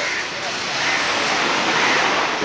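Steady rushing noise of a passing motor vehicle, swelling slightly toward the end, with faint voices underneath.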